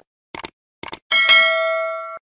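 Sound effect of a subscribe-button animation: two short clicks, then a bright bell-like ding that rings and fades.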